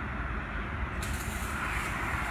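Steady outdoor background noise: a low rumble with a hiss that grows louder about halfway through.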